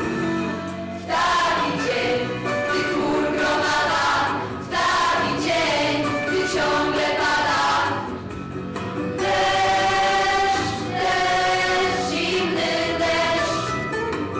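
A youth vocal ensemble of teenage girls and boys singing together into microphones, in sung phrases separated by short breaths.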